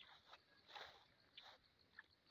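Near silence, with a few faint, short rustles of footsteps in grass.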